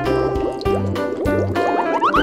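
Bouncy children's background music with a steady, repeating bass beat. Near the end a cartoon sound effect begins that climbs in pitch in quick small steps.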